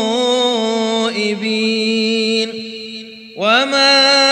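A male Quran reciter's voice holding a long melodic note at the end of a verse. The note fades out about three seconds in, and just before the end a new phrase starts with a rising pitch.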